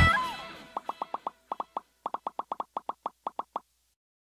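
The song's music fades out, then a cartoon popping sound effect plays: about twenty short, pitched plops in quick uneven runs.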